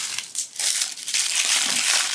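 Crinkly tissue paper crumpling and crackling as it is pulled open by hand around a small toy accessory: a dense run of fine crackles that grows thicker about half a second in.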